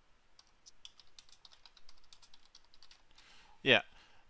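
Faint typing on a computer keyboard: an irregular run of soft clicks through most of the pause.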